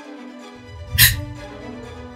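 Soft background music holding sustained chords, with one short breathy hiss about a second in.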